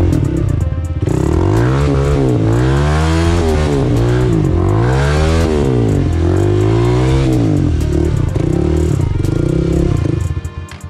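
Honda dirt bike engine revving up and down again and again, roughly once a second, under load on a steep rutted climb.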